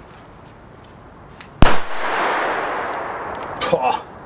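A single very loud, sharp bang from a Zena Match Cracker, a small friction-head firecracker loaded with 1.2 g of black powder, set off standing upright. The report echoes and dies away over about two seconds.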